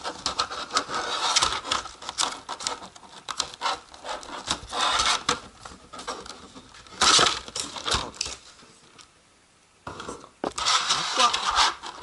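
Clear plastic packaging crinkling and crackling as it is handled and pulled apart: a rigid blister tray and a thin plastic bag. It comes in irregular spells, loudest about seven seconds in, then goes quiet for about a second and a half before the rustling resumes.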